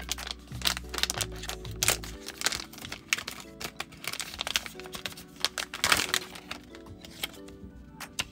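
Clear plastic retail pouch crinkling and crackling as a phone case is pulled out of it, over background music.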